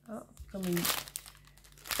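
Thin plastic bag packed with small packets of diamond-painting drills crinkling as it is handled and lifted. The rustling comes in the first second and again, louder, just before the end.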